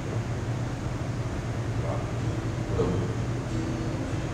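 Steady low hum and room noise, with faint murmured voices now and then.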